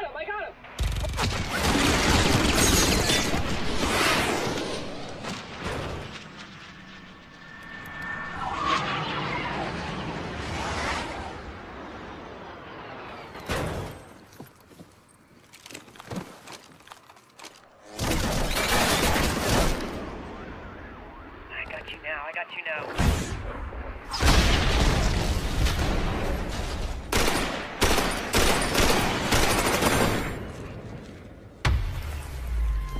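Action-film battle sound effects: volleys of gunfire and booms in several loud stretches, separated by quieter gaps.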